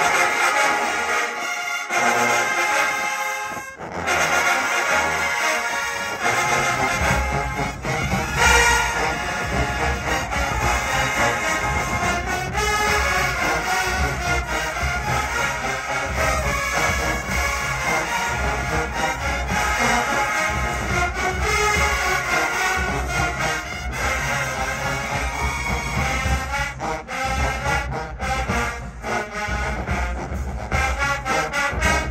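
Large marching band playing a brass arrangement. The bass line comes in about four seconds in and is full from about seven seconds on.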